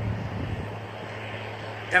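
A steady low engine hum with faint background noise; the speaker's voice comes back right at the end.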